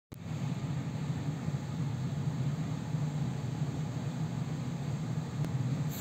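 Steady low background hum with a faint hiss, unchanging throughout, with one tiny click near the end.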